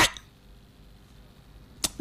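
A pause in the speech filled with faint, steady room hiss, broken near the end by a single short, sharp click.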